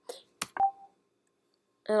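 Two sharp clicks a tenth of a second apart, the second followed by a brief beep-like tone, then quiet.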